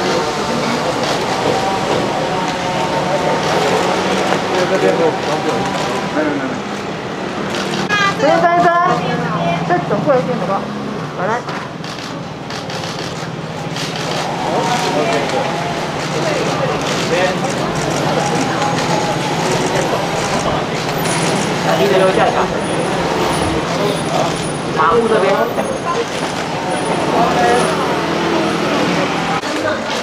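Indistinct chatter of several people over a steady low drone of street traffic, with one louder voice standing out about eight seconds in.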